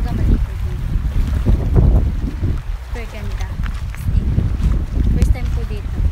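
Wind buffeting the microphone in an uneven low rumble, with small lake waves lapping and splashing against a rocky, pebbly shore.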